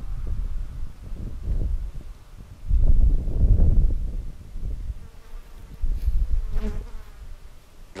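Wind gusting over the microphone: low rumbling buffets that rise and fall in surges, strongest about three seconds in.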